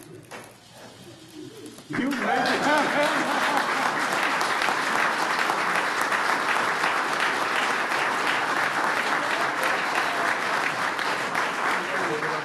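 Audience applause, starting suddenly about two seconds in and holding steady as dense clapping, with a few voices mixed in at its start.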